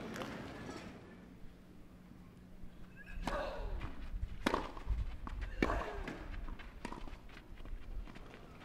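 Tennis rally on a clay court: a series of sharp racket-on-ball strikes, roughly one a second, beginning about three seconds in after a quiet start.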